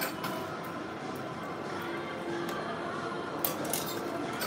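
Coins being fed one at a time into a crane game's coin slot, with a few faint clicks, mostly near the end, over steady arcade background noise and faint music.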